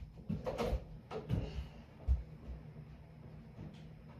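A few short knocks and thumps in the first couple of seconds, then quiet room tone.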